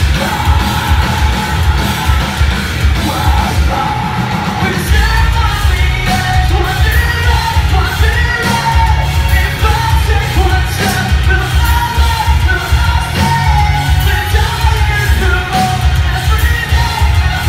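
Live metalcore band playing loud through a venue PA: distorted guitars, a fast pounding kick drum and a vocalist singing into the microphone, with the drums and vocals filling out about five seconds in.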